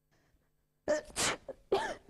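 A person sneezing: two loud, sudden sneezes close together, starting about a second in.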